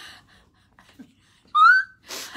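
A woman's short, high-pitched squeal of laughter about one and a half seconds in, rising in pitch and lasting about half a second, after a breathy laugh trails off.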